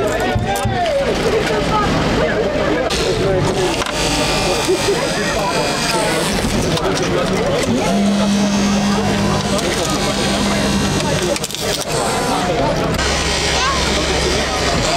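Overlapping voices and crowd chatter with an engine running underneath, and a steady hum for about three seconds starting roughly eight seconds in.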